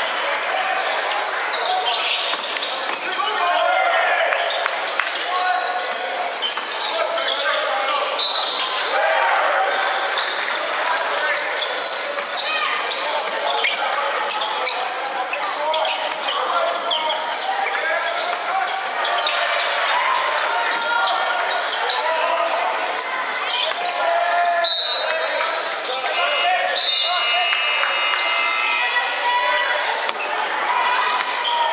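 Basketball game on a hardwood court in a large echoing gym hall: the ball bouncing as it is dribbled, with players' and spectators' voices throughout and brief high squeaks late on.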